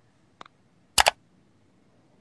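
A faint click, then a sharp double click about a second in.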